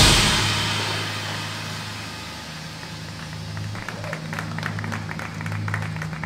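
Drumline and front ensemble's last full hit, with drums, cymbals and keyboard percussion, ringing out and fading over about two seconds at the end of a phrase. After it a low steady hum remains, with faint scattered ticks from about halfway through.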